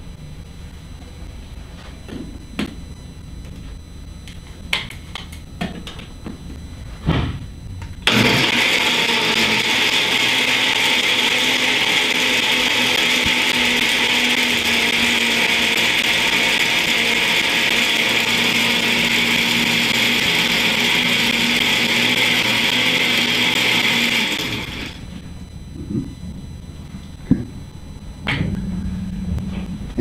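Countertop blender with a glass jar running steadily for about sixteen seconds, pureeing fruit and vegetables into a smoothie, then stopping. A few light knocks and clicks come before it starts and after it stops.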